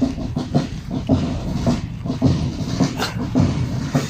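Boots of a column of marching guards striking the gravel in step, a regular tread of about two steps a second.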